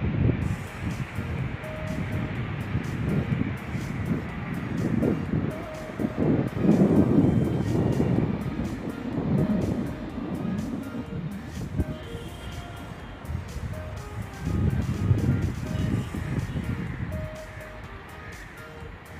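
Wind buffeting the phone's microphone in gusts: a low rumble that swells and fades, loudest about six to eight seconds in and again near fifteen seconds.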